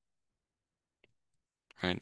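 Near silence with a single faint click about a second in, then a man's voice begins near the end.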